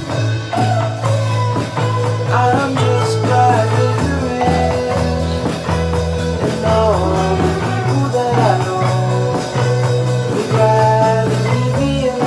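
A small rock band playing an instrumental passage: an electric guitar melody over strummed acoustic guitar, electric bass and a drum kit. The bass moves to a new note about every four seconds.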